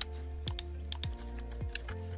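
A few sharp computer-keyboard keystrokes, spaced irregularly, over soft background music with held chords and a steady low beat.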